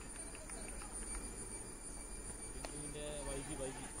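Faint open-air background noise, with a distant voice calling out briefly about three seconds in.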